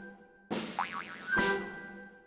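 Playful cartoon sound effect: a sudden hit about half a second in with a quick up-and-down bend in pitch, then a second hit under a second later that leaves a ringing tone fading out.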